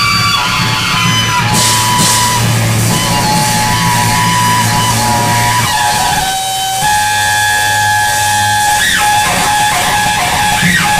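Live rock band playing loud, with electric guitar holding long sustained notes. The sound thins briefly about six and a half seconds in, and a note bends down in pitch near the end.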